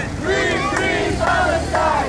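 A crowd of protesters shouting together, many loud voices overlapping.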